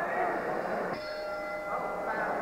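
Boxing ring bell struck once about a second in, ringing with a clear tone for under a second: the signal for the start of the round.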